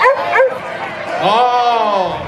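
A dog barks twice in quick succession, about half a second apart. It is followed about a second later by a longer drawn-out call that rises and then falls in pitch.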